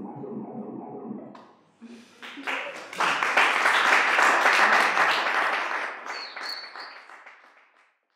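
Small audience applauding at the end of a song: the clapping starts about two seconds in, swells, then dies away, with a brief high whistle near the end.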